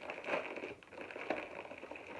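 A thin plastic bag crinkling as it is handled and pulled open around a packaged waffle, in short irregular crackles.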